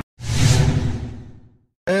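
A whoosh transition sound effect with a low rumble under it. It hits suddenly and fades away over about a second and a half.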